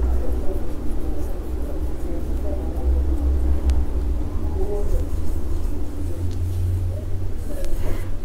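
A steady low background rumble, with faint irregular sounds above it that could be distant voices.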